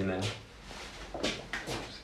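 Voices in a small room: the end of a man's sentence, then a quieter stretch and brief, softer voices.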